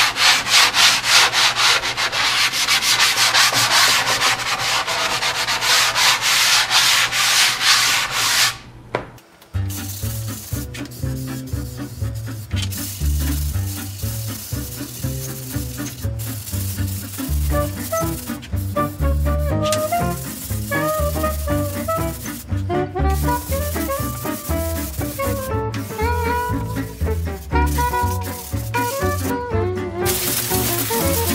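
Hand sanding with an 80-grit sanding block on a primed shelf, quick rhythmic back-and-forth rubbing strokes that knock down the wood fibres raised by the first coat. About nine seconds in it stops and swing music with a walking bass takes over for the rest.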